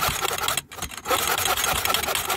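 Hand mitre saw running in a mitre box, cutting across a pallet plank with quick back-and-forth strokes and a brief pause just over half a second in.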